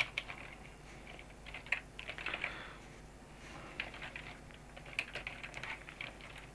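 Typing on a computer keyboard: short, irregular runs of quick keystrokes as a line of code is typed.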